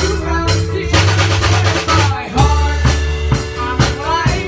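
A live rock band playing drum kit, bass guitar and keyboard, with a quick run of drum hits about a second in. Voices come back in singing in the second half.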